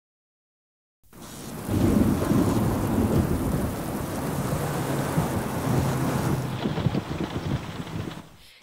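Rain falling with deep rumbling thunder, fading in after about a second of silence, with a low steady hum underneath.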